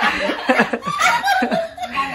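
A group of women laughing together in rapid chuckles, with a few spoken words mixed in.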